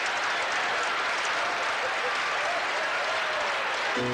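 Audience applauding, steady and sustained.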